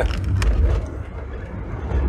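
Car cabin noise while driving on a wet road: a steady low rumble from the engine and tyres, with one sharp click about half a second in.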